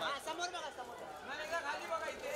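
Several people's voices talking over one another: crowd chatter, with no single clear speaker.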